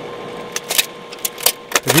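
Steady film-projector-style hiss with a faint hum, broken by a scatter of irregular sharp clicks, like old film running through a projector; a voice begins at the very end.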